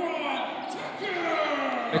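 A basketball being dribbled on a hardwood gym floor, under voices in the hall.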